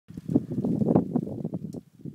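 Blizzard wind buffeting the phone's microphone: a loud, low, gusty rumble with irregular knocks that dies away near the end.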